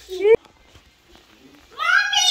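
A person's voice: a short rising vocal sound that cuts off abruptly, then, near the end, a long high-pitched wordless cry that rises and then falls in pitch.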